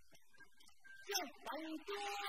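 After a quiet first second, an actor's voice starts a drawn-out, stylised declaimed line in Vietnamese traditional-opera manner, its pitch gliding and held rather than spoken plainly.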